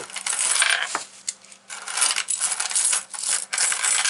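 Soviet kopeck coins poured from a hand onto a heap of coins on a table, clinking and jingling. The clinking comes in two runs, with a short lull about a second in.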